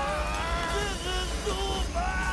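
Men's drawn-out yells of strain under heavy g-force, several voices overlapping in long held cries, over a steady deep rumble.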